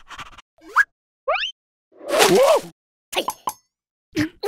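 Cartoon sound effects and vocal noises: two quick rising whistle-like glides, then a loud, noisy cry with a wavering pitch about two seconds in, then a few short clicks.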